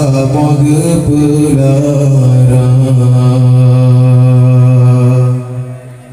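A man's voice chanting an Acehnese religious verse (syair) through a microphone and loudspeakers: a melodic line that settles about two seconds in into one long held note, which dies away near the end.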